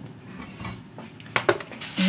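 Gas hob burner being lit under a frying pan, a faint steady hiss, then three sharp clicks or clinks near the end.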